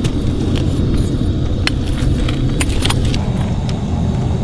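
A steady low rumble, with a few sharp metallic clicks and taps as a steel spoon works the hardening lava in a small cast-iron crucible.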